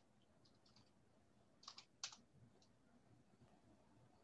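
Near silence broken by a few faint clicks, then two louder clicks close together about two seconds in.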